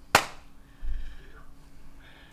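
A single sharp smack just after the start, dying away quickly, followed about a second later by a softer low thump.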